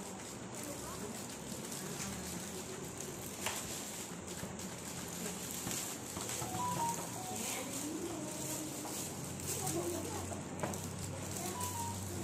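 Indistinct murmur of voices in a room over a steady low hum, with faint background music.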